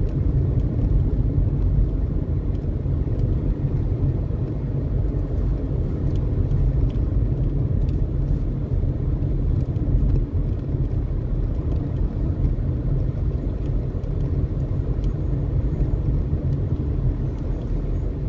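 Steady low rumble of a car driving, engine and tyre noise heard from inside the cabin.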